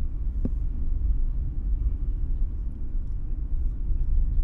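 Steady low rumble of a car on the move, heard from inside the cabin: engine and road noise, with a faint click about half a second in.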